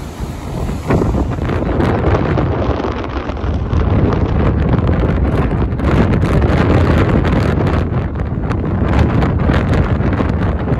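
Strong wind buffeting the microphone, over the noise of rough sea surf.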